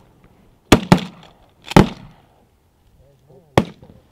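Four shotgun shots fired at a flock of ducks overhead: two in quick succession about a second in, a third about a second later, and a fourth near the end.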